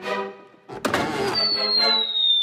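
Cartoon sound effects over background music: a sudden whoosh a little before a second in, then a long high whistle that slowly falls in pitch.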